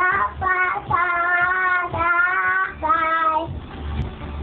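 A toddler singing along in long held notes, four or five phrases in a row, with recorded pop music underneath.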